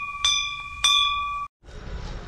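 Temple bell struck twice, about half a second apart, over the ringing of a strike just before. The ringing is clear and sustained, then cuts off abruptly about a second and a half in.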